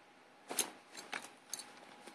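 A few short, crisp crackles about half a second apart, the first the loudest: crumpled fabric handled close to the microphone.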